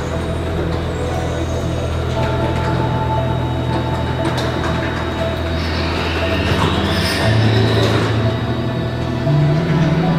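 Background music with sustained low notes, shifting in pitch about seven seconds in and again near the end.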